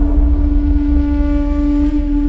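Dramatic background film score: a single held note over a deep, steady low rumble.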